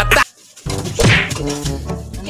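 Rap music cuts off abruptly, and after a brief silence a sharp whack sounds about half a second in.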